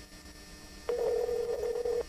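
A steady telephone line tone, heard over the phone, begins with a click about a second in and cuts off suddenly about a second later, as the call is placed again after the line was cut off.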